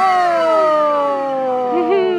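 A woman's long, drawn-out vocal "Ohhh", held for about two seconds and falling slowly in pitch.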